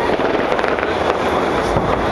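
New Year fireworks going off in a dense, continuous crackle of many small pops at a steady loudness.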